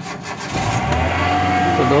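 Hyundai Santro's engine started cold with the key: the starter cranks briefly and the engine catches about half a second in, then runs at a steady, raised idle. The idle is high because the engine is cold.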